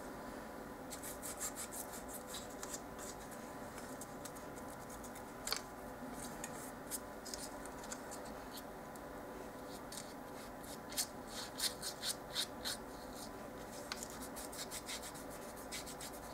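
Faint scratchy dabbing and rubbing of a small paintbrush working white paint into a folded paper miniature baking pan, with a sharper tick about five and a half seconds in, over a faint steady hum of room noise.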